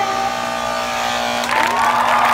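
A sustained music chord over a steady hum. About one and a half seconds in, a louder burst of crowd cheering and applause comes in, an added sound effect.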